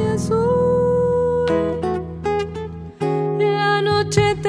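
Argentine zamba played on acoustic guitar with piano: a long held melody note over the chords, fading briefly about three seconds in before a new chord begins.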